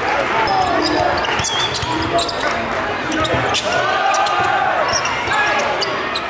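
Live basketball game sound in a large gym: a basketball bouncing on the hardwood court with sharp knocks, over shouting voices and crowd noise.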